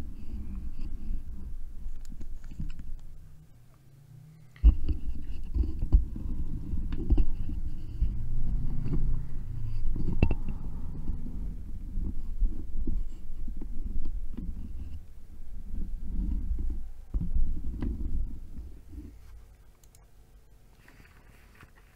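Microphone handling noise as the mic is lowered into position: low rumbling with irregular bumps and knocks, a brief lull and then a sudden thump about four and a half seconds in.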